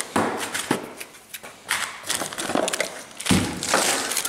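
Hand tools and engine parts being picked up and handled at a workbench: a string of clicks, knocks and light rustles, with a heavier thump about three seconds in.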